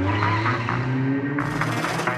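Racing-car sound effect sampled into a drill beat: an engine note rising slowly with tyre-skid noise, over the beat's steady bass. A brighter noise joins a little past halfway.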